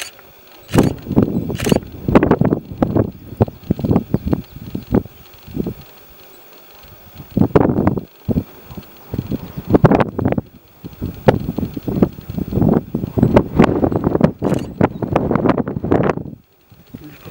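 Wind buffeting the camera microphone in loud, irregular gusts, with a quieter lull near the middle.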